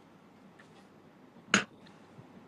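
A single sharp click about one and a half seconds in, over a faint steady hiss.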